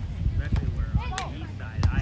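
Outdoor wind rumbling on the microphone with faint voices. Near the end comes a sharp slap: a beach volleyball struck on a player's forearms as the serve is passed.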